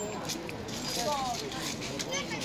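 Several children's and adults' voices talking and calling over one another, with a few sharp clicks of a table-tennis ball being hit and bouncing on a concrete table.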